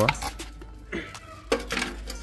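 Hard plastic motorcycle side cover being handled after it is pulled off its mounts, with a short plastic clatter about one and a half seconds in.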